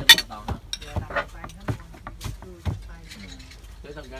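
Kitchen knife chopping on a wooden cutting board: a string of irregular knocks, the loudest right at the start, ending about three seconds in.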